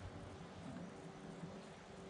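Quiet background with a faint steady low hum and no distinct event.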